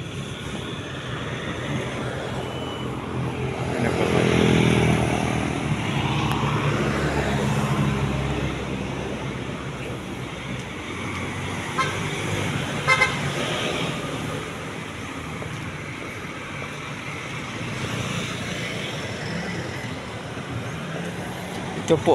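Road traffic passing close by, one vehicle louder as it goes by about four to eight seconds in, with a couple of short horn toots around twelve to thirteen seconds in.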